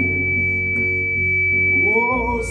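Live gospel band accompaniment between sung lines: an electric bass holds a low note under a sustained, unchanging chord, with a thin high steady whine over it. The chord shifts right at the end as singing comes back in.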